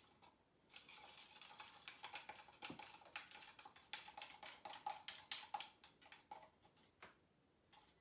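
A stir stick rapidly clicking and scraping against the inside of a plastic cup as acrylic paint is mixed with pouring medium to thin it, heard as a faint run of quick light taps that stops about a second before the end.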